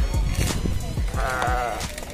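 A sheep bleats once about a second in, a short wavering call, over background music with a steady low beat.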